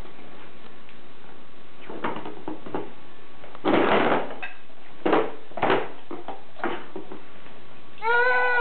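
Plastic cup knocked and scraped about on a high-chair tray by a baby's hands: two knocks, a longer scraping clatter a little before halfway, then three more knocks.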